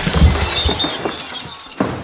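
Glass shattering: a loud crash with pieces tinkling as it dies away, then a second sharp hit near the end.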